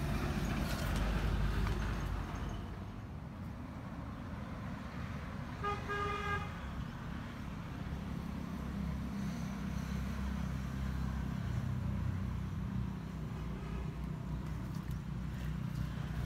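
Steady low engine rumble, with a single horn toot lasting about a second around six seconds in.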